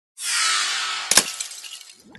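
Intro sound effect for an animated logo: a loud hissing whoosh with a falling sweep, then a sharp crash about a second in, glassy and shattering, ringing away as it fades.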